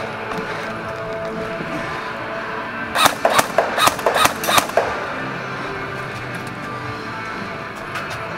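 Airsoft pistol fired about nine times in quick succession, roughly five shots a second, about three seconds in, with sharp snapping reports. Background music plays throughout.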